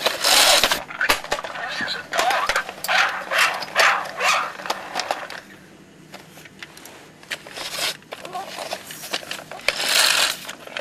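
Plastic parts of a disassembled See 'n Say toy being handled, with many sharp clicks and knocks, over a muffled voice that is not clear enough to make out words.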